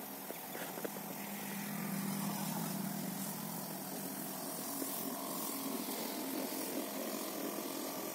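A steady low motor hum over a faint hiss, swelling slightly about two seconds in and easing off again.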